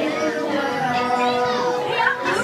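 A ride's soundtrack song playing, with held musical notes under voices that speak and sing over it.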